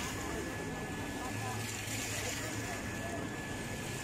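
Steady splashing of small fountain jets in a shallow pool, with a background murmur of many people's voices.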